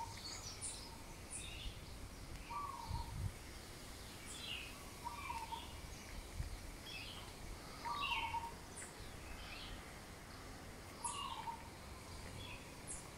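Birds calling in the open: a short, low falling call repeats about every two to three seconds, with quieter higher chirps between.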